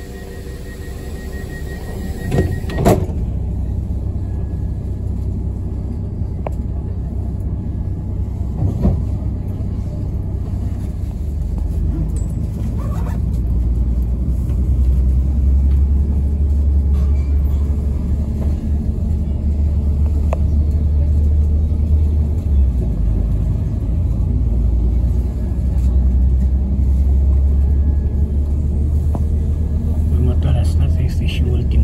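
Inside the carriage of a passenger train pulling away from a station: a low rumble that grows steadily louder as the train gathers speed. For the first couple of seconds a rapid high beeping and some steady tones sound, ending in a thud just under three seconds in.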